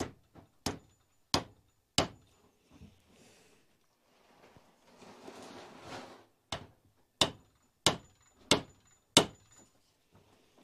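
Small hammer tapping on a fitting in a Stihl 036 chainsaw's crankcase while a new oil pump and oil hose are being seated. There are three sharp taps, a pause filled with soft handling noise, then five more evenly spaced taps.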